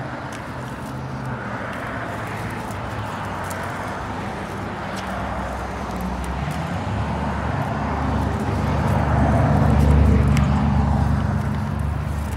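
Road traffic going by, with a motor vehicle's engine growing louder to a peak about ten seconds in and then fading as it passes.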